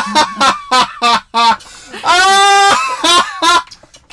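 Loud, high-pitched honking laughter from people in the room, in a string of short bursts with one long held whoop about two seconds in.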